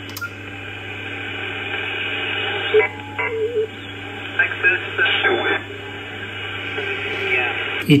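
Kenwood TS-590 HF transceiver's receiver audio in upper sideband while being tuned onto the 17-metre band at 18.150 MHz: a steady hiss of band noise with several steady whistling tones and snatches of garbled voices.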